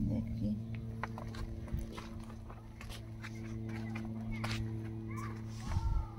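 A steady low hum running throughout, with scattered faint clicks and brief chirps over it.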